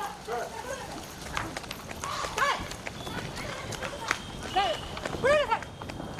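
Women shouting in short, high calls while running, with quick footsteps on pavement.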